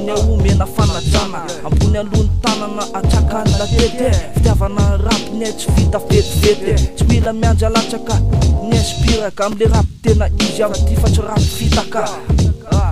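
Boom bap hip hop track: a rapper's voice, in Malagasy, over a drum beat with heavy bass, with a brief break about ten seconds in.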